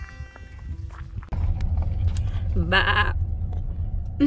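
A sheep bleating once, a short wavering call about two and a half seconds in, over a steady low rumble that starts about a second in.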